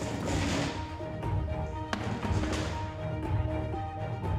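Background music: held notes that step between pitches over a low throbbing beat, with swelling washes and one sharp hit about two seconds in.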